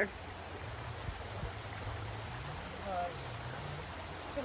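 Small spring-fed creek flowing over a shallow bed: a steady, even rush of water.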